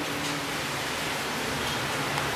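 Steady hiss of room noise with a faint low hum, in a lull between voices.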